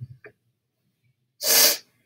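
A single short, forceful burst of breath, sneeze-like, about one and a half seconds in, lasting under half a second.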